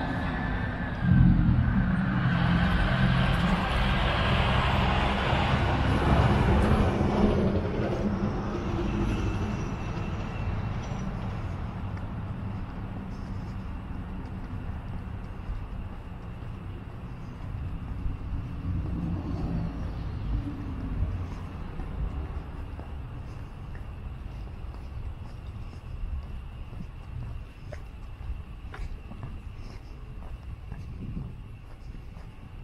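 A motor vehicle driving past, loud from about a second in and fading away over the next several seconds, leaving steady, quieter street background.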